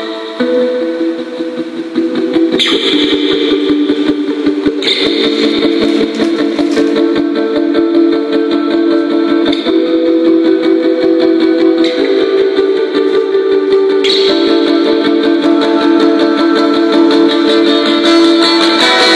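Instrumental post-rock piece played on a solo guitar: repeated picked notes ringing over chords that change every few seconds.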